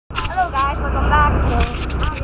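A boat engine running with a steady low drone, with a voice talking over it.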